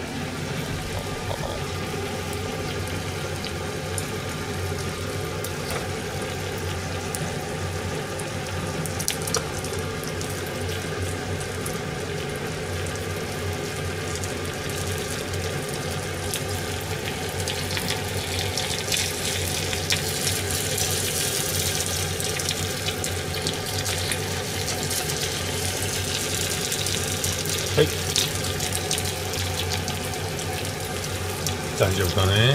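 Okonomiyaki of cabbage and pork belly frying over low heat in a large iron pan: a steady sizzling hiss that grows somewhat louder about two-thirds of the way through. A few light clicks are heard along the way.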